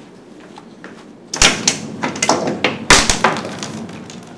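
Two loud knocks about a second and a half apart, with clattering and rustling between and after them, as of something being handled or bumped.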